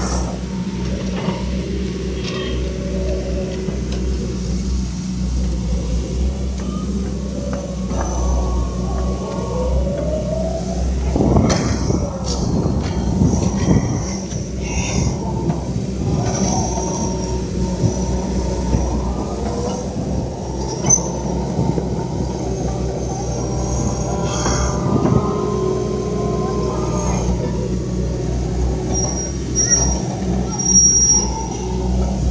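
Hydraulic excavator diesel engines running with a steady low drone, with crowd voices over it.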